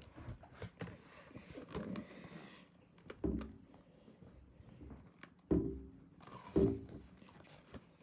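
Handling of a hardcover picture book: soft rustling and shuffling as it is held up and its pages are shown, with three short, louder bumps in the second half.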